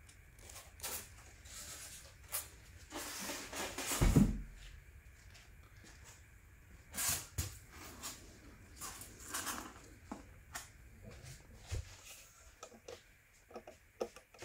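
Polystyrene foam packaging and plastic-wrapped parts being handled: scattered rustles, crinkles and light knocks, with a heavier thump about four seconds in.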